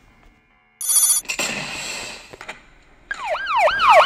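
Film sound effects: a sudden sharp blast about a second in, trailing off into a hiss. About three seconds in, a fast wailing, siren-like tone starts, swooping up and down about three times a second.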